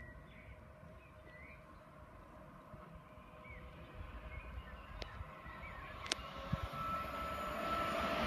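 Southern Class 377 Electrostar electric train, two units coupled, approaching, faint at first and growing steadily louder through the second half, with a steady whine coming in near the end.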